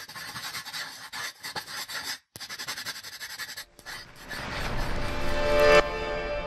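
Animated-logo sound design: quick pencil-on-paper scratching sound effects, then a rising swell from about four seconds in that peaks just before the end and turns into a ringing, bell-like chord.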